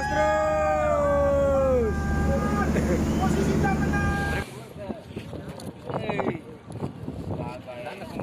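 A group of men cheering and whooping in long drawn-out calls over the steady low rumble of the towing boat's engine working against the tow lines. A little past halfway the sound cuts to quieter, scattered voices and wind.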